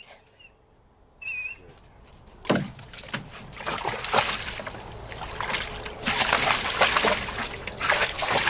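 Dog wading and pawing in a shallow plastic kiddie pool, the water splashing and sloshing unevenly. The splashing starts about two and a half seconds in and grows louder toward the end.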